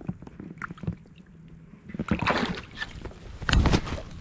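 Water splashing and sloshing in the muddy shallows at a pond's edge, with two louder splashes, one about two seconds in and a louder one near the end.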